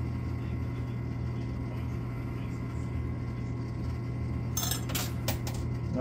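Quarters clinking as they are played into a coin-pusher arcade machine: a short run of sharp metallic clinks near the end, over a steady low hum.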